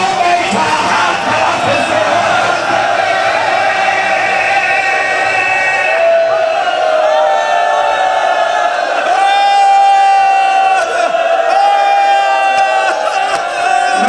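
Several men's voices chanting loudly together, with long drawn-out held notes in the second half.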